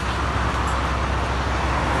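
Steady road traffic noise: a continuous low rumble with an even hiss over it.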